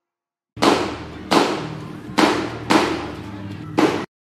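Five sharp bangs, unevenly spaced and each trailing off in an echo, over a low steady hum, played back from the soundtrack of footage of a street-protest camp at night. The sound cuts off abruptly near the end when the video is paused.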